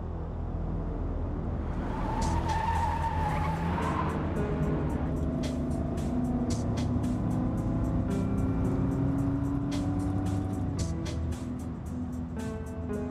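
Car engine running with a brief tire squeal about two seconds in, under a soundtrack with a quick, steady ticking beat.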